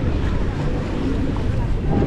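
Steady wind noise rushing on the microphone, with outdoor beach ambience under it.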